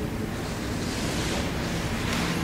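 Steady hiss of room and recording noise, with no speech.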